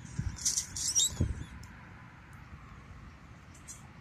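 Clear plastic packaging crinkling and rustling as it is handled, in short bursts with a couple of soft knocks over the first second and a half. After that only a faint background remains.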